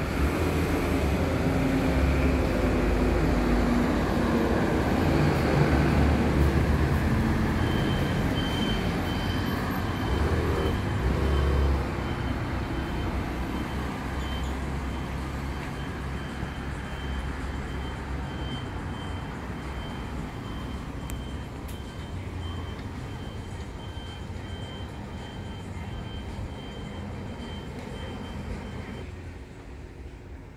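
Road traffic: a heavy vehicle's low rumble, loudest in the first dozen seconds and then slowly fading away, with a faint thin steady whine over it from about eight seconds in.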